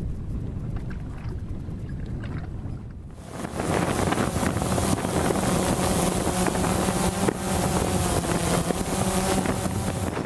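Wind rumbling on the microphone aboard a bass boat. About three seconds in, this gives way to a louder, steady drone-propeller hum holding an even pitch.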